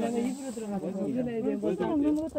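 Voices talking quietly, softer than the main talk around it, with a faint steady high hiss underneath.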